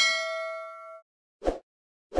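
Notification-bell 'ding' sound effect from an animated subscribe graphic: a bright chime with several overtones that rings and dies away within about a second. About a second and a half in comes a short soft thump.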